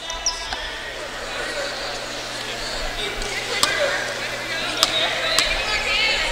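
A basketball bounced on the hardwood court a few times, sharp single knocks spaced out over several seconds, over the murmur of the gym crowd.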